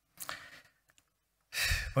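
A man breathing into a close microphone: a short sigh-like exhale a quarter second in, a faint click near one second, then a louder, sharp intake of breath about a second and a half in.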